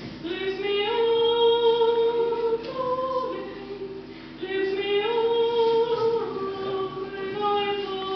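A woman singing solo in a trained classical voice, holding long notes. The phrase ends about three and a half seconds in, there is a short breath, and the next phrase begins just after four seconds.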